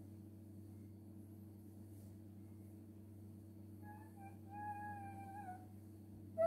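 A high-pitched, drawn-out vocal call starting about four seconds in and lasting about a second and a half, holding one pitch and dipping at its end, over a steady low hum.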